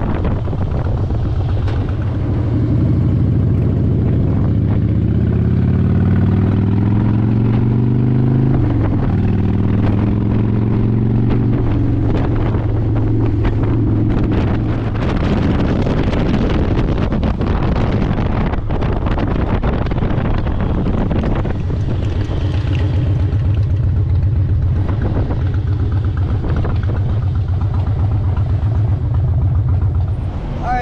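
2005 Harley-Davidson Heritage Softail Classic's Twin Cam 88B V-twin with Vance & Hines exhaust, heard from the rider's seat while riding. The engine note climbs, drops sharply about eight and a half seconds in as a gear changes, and climbs again. From about halfway, steady cruising and wind noise on the microphone take over.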